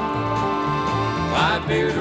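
Twelve-string acoustic guitar and banjo playing a country-bluegrass accompaniment, with low notes stepping in a steady bass pattern; a man's voice comes in singing about a second and a half in.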